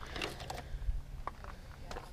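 Faint clicks and light knocks of gear being handled as a hand-pump water faucet is picked up out of a wire basket of tools and hoses.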